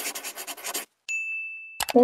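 Logo sound effect: a rapid run of short, scratchy, pen-like strokes for about a second, then a single high ding that rings and fades for under a second.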